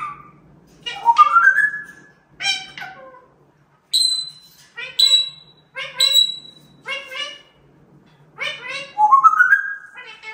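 African grey parrot talking in mimicked human words, such as "here you go" and "treat treat", in a string of separate calls. Three short high whistled notes come about four to six seconds in, and rising whistled glides come near the start and near the end.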